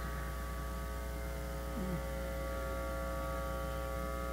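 Steady electrical mains hum and buzz from a public-address system: a low drone with a set of steady higher tones over it. It is the noise of a faulty power connection in the PA, and someone is asked to hold the power cable so it stops.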